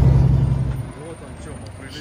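Steady low drone of a semi-truck's engine and road noise heard inside the cab at highway speed. It cuts off a little under a second in, leaving only faint background.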